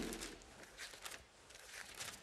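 Faint, soft rustling of Bible pages being turned, over quiet room tone.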